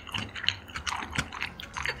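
Close-miked mouth sounds of eating saucy black bean noodles: wet chewing and slurping, with irregular smacks and clicks.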